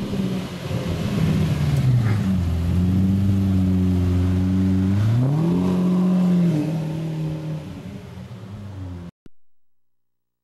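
Lamborghini Murciélago roadster's V12 engine pulling away: the engine note drops and holds, then revs up sharply about five seconds in before fading as the car moves off. The sound cuts off suddenly near the end.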